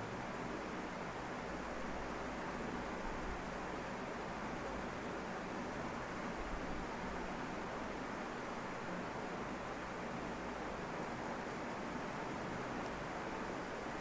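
Steady low hiss of background noise with no distinct events.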